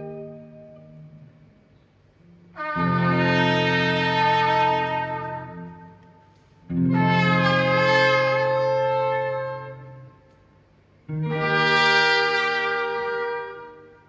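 Live trio of saxophone, a second wind instrument and electric guitar playing long held chords together: a chord dies away, then three more come in about four seconds apart, each held for about three seconds and fading out into a short quiet gap.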